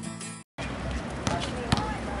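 Acoustic guitar song tails off and cuts out half a second in; then a basketball bouncing on an outdoor court, two sharp bounces about half a second apart, over faint background voices.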